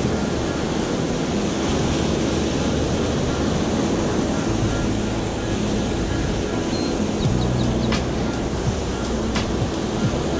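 Surf washing in over jetty rocks, a steady rush of waves with wind buffeting the microphone, under background music. A few sharp clicks come near the end.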